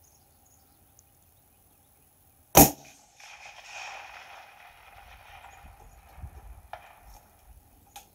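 A single long-range rifle shot about two and a half seconds in, sharp and loud, followed by a softer tail of its echo that fades over the next few seconds.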